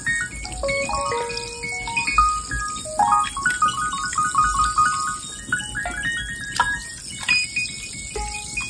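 Fast, dense piano playing in the upper register, rapid clustered notes and short runs, mixed with other sounds resembling animal calls and low bass thuds every couple of seconds, in a chaotic jumble.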